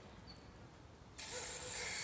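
Garden hose spray nozzle squeezed on again about a second in, after a brief quiet pause: water spraying onto the soil around a newly planted seedling, a steady hiss.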